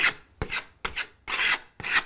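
Metal filling knife scraping filler across a hole in a plaster wall, about five short strokes at roughly two a second.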